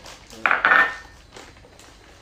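A clatter against a large stainless steel mixing bowl, about half a second in, with a brief metallic ring.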